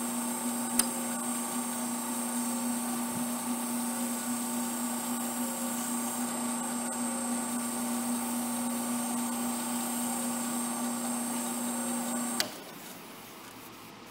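Wood lathe running at a steady speed with a steady motor hum and whine while a paper towel wipes the spinning blank. It cuts off suddenly with a click about twelve seconds in, when the lathe is switched off.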